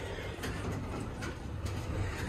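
Schindler 300A hydraulic elevator's center-opening doors closing after a floor call: a steady low rumble with a few faint clicks.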